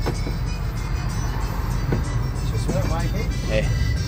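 Dotto road train running, a steady low rumble of its motor and wheels heard from inside its open passenger carriage.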